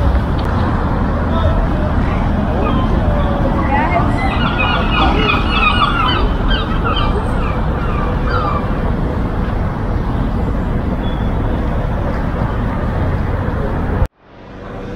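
Outdoor city-square ambience: a steady rumble of traffic with passers-by talking, the voices clearest from about four to seven seconds in. The sound cuts off suddenly at the end.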